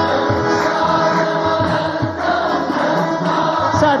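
Indian devotional bhajan music: a chorus of voices sings long held notes over a low hand-drum beat.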